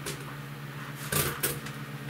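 Steady low hum of a small DC fan running off the solar charge controller. About a second in, a brief loud clatter of a cordless drill being picked up off a metal ladder top.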